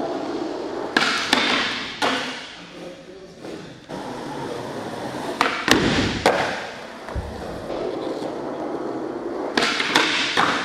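Skateboard wheels rolling on a concrete floor, broken by several sharp clacks of the board popping and landing, and a scraping grind of the board along a ledge edge a little past the middle.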